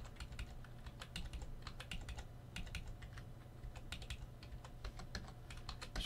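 Typing on a computer keyboard: a run of irregular key clicks while code is edited, over a steady low hum.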